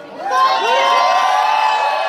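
Audience cheering, breaking out just after the music stops, with many overlapping high whoops rising and falling in pitch.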